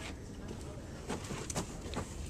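Scattered crinkles and sharp crackles of a reinforced polyethylene pond liner (BTL PPL-24) being stepped on and pressed into place, over a low rumble.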